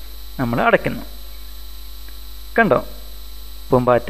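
Steady low electrical mains hum on the recording, with a few short phrases of spoken narration about half a second in, midway and near the end.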